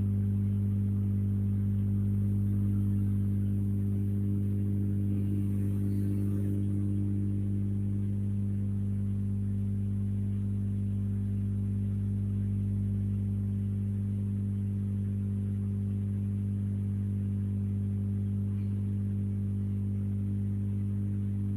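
A steady low electrical hum, two deep tones held unchanged throughout, with no other sound over it.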